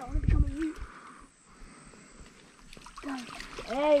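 A barramundi splashing and thrashing in shallow water as it is released by hand, loudest in the first half-second, then only a faint water sound.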